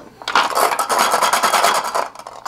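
Hard plastic lipstick tubes clattering and scraping in a clear acrylic organizer as it is picked up and handled, a dense run of rattles starting a moment in.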